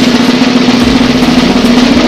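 A snare drum roll sound effect, a steady, loud, unbroken roll building up to a reveal.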